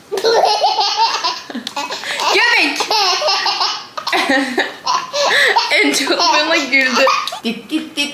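A baby laughing in a fit of belly laughter, peal after peal with only short breaks for breath.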